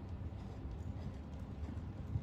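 Hoofbeats of a KWPN dressage horse cantering on an indoor sand arena: dull, low thuds in an uneven rolling rhythm.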